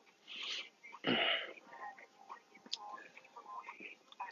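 A man's breathing and mouth noises as he pauses in his talk: a soft breath, then a louder breathy exhale about a second in, followed by faint lip and mouth clicks.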